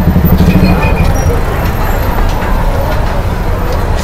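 Street traffic dominated by the steady low rumble of a city bus engine running close by. A short high beep comes about half a second in.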